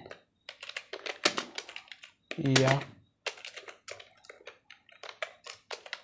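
Computer keyboard typing: a run of uneven key clicks, with one slowly dictated word about two and a half seconds in.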